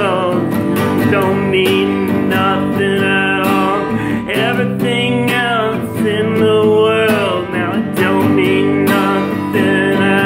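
Acoustic guitar being strummed and picked in a steady accompaniment pattern.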